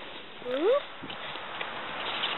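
A toddler's single short rising vocal squeak about half a second in, over a steady hiss.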